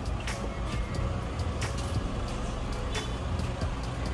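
A vehicle engine running steadily, with general street noise and a few faint knocks.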